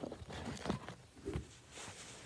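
Handling noise from a camera being propped against a pillow: soft fabric rustling and three dull thumps.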